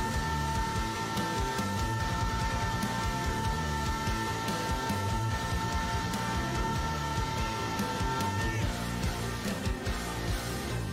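Progressive rock recording with guitars, bass and drums, over which a singer holds one high note steady for about nine seconds, letting it go near the end.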